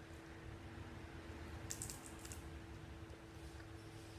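Faint crisp crackles about two seconds in, from biting into the crunchy wafer (oblea) of a muégano sweet, over a steady low hum.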